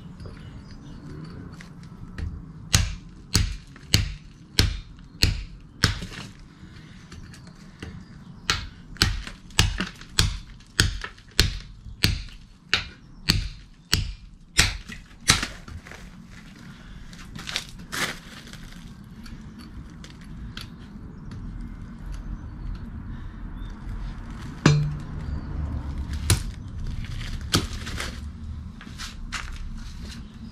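Hand hammer striking a chisel to chip concrete off the end of a wooden post: a run of sharp blows, about one and a half a second, with a short pause after the first few, then a handful of scattered heavier blows near the end.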